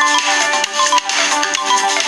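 Several Samsung phone melodies sounding at once from the phones' speakers: the Galaxy S7 edge's incoming-call ringtone and the Galaxy S4 mini's alarm, overlapping.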